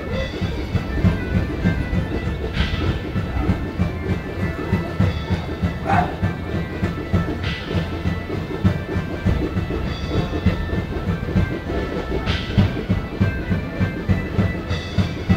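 Live medieval-style folk music: drums beating quickly and steadily under a held drone of pipes, with short higher accents every few seconds.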